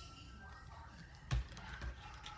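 A hardcover picture book being handled: one sharp knock about a second and a half in, then a lighter tap near the end, over quiet room tone.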